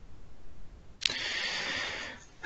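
A single sharp computer-mouse click about a second in, followed by about a second of steady hiss.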